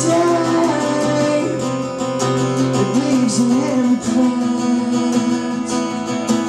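Live acoustic music: a strummed acoustic guitar with a man singing a melody over it.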